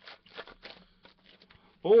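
Foil wrapper of a Bowman Sterling trading-card pack being torn open and crinkled by hand, a run of irregular rips and crackles through the first second and a half.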